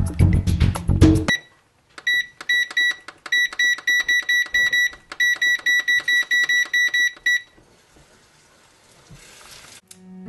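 Music with a bass beat stops about a second in. Then an electric range's control-panel keypad beeps in a rapid run of short, high beeps, several a second, for about five seconds as the oven timer is keyed in, followed by faint hiss.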